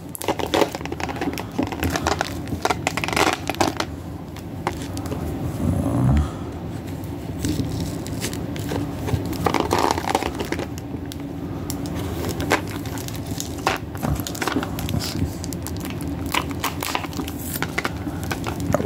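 Letter opener scraping and prying at a tightly taped package, with crinkling of the tape and wrapping as gloved hands turn and work it. Irregular scratches and small clicks go on throughout.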